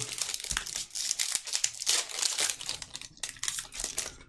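Foil wrapper of a Magic: The Gathering collector booster pack crinkling and tearing as it is pulled open by hand, an irregular crackle of small sharp snaps.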